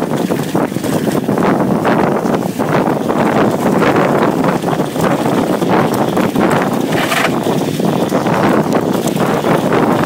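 Mountain bike riding over a rough dirt trail, heard from a handlebar-mounted camera: a loud, steady rush of wind on the microphone and tyre rumble, with scattered rattles and clicks from the bike over stones.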